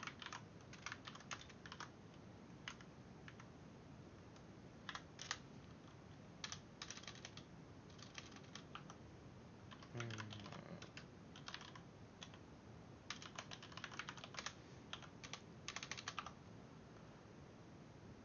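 Faint typing on a computer keyboard, in short runs of keystrokes broken by pauses.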